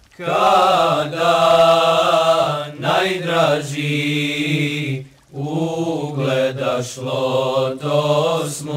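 Male choir singing an ilahija with no instruments: a held low drone under a wavering melody line. The singing breaks off briefly about five seconds in, then resumes.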